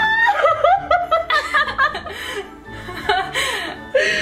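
Two women laughing hard in short, choppy bursts, with music playing underneath.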